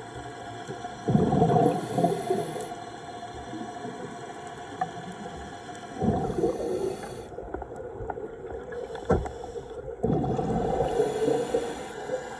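Scuba regulator exhaust bubbles heard underwater: three rushing exhalations, about four to five seconds apart, over a steady underwater background.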